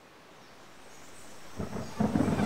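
A steady hiss of background noise fading in and growing gradually louder, with a louder, fuller sound setting in near the end.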